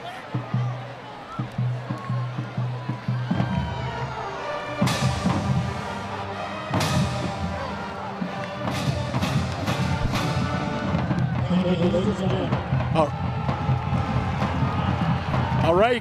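High school marching band playing: sustained brass chords, with drum hits joining about five seconds in and coming thicker toward the end.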